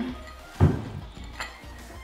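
A black hexagonal floor tile knocked against a concrete subfloor as it is shifted into place: one dull thunk about half a second in and a lighter knock a little later, over background music.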